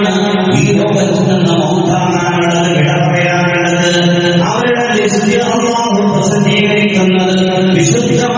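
A man's voice chanting in long, held melodic phrases, the pitch shifting to a new phrase about halfway through.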